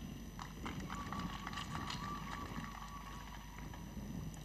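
Faint, scattered hand clapping from a seated crowd, with a thin, faint high tone held through the middle.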